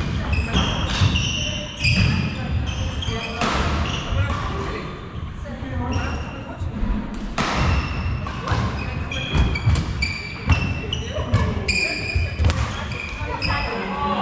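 Badminton rally on a wooden sports-hall floor: repeated sharp racket strikes on the shuttlecock, with shoes squeaking and feet thudding on the floor.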